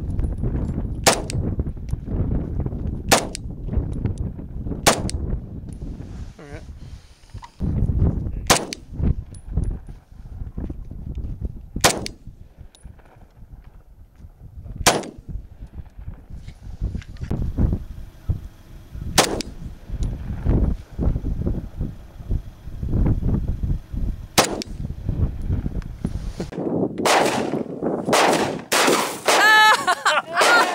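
Single pistol shots from a 10mm fired at a target about 300 yards off, about eight of them spaced a few seconds apart, with wind rumbling on the microphone between shots. In the last few seconds, a quick run of louder shotgun shots with a ringing tone.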